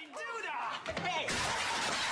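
A man yells, and about a second in a loud crash of breaking crockery starts suddenly and keeps going.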